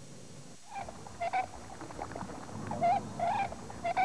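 Birds calling: a few short, wavering cries, repeated several times from about a second in.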